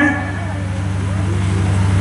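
A steady low hum, heard in a brief gap in a man's narration.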